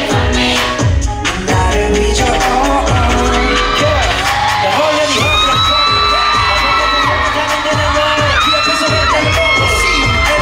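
Upbeat K-pop dance track with male group vocals over a heavy, steady kick drum, about two beats a second.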